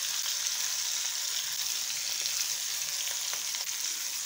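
Marinated fish pieces shallow-frying in hot oil in a kadai: a steady sizzle.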